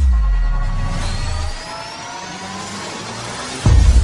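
Sound-designed logo sting: a heavy hit with a deep falling boom, then several tones rising slowly together, ending in a second loud bass hit near the end.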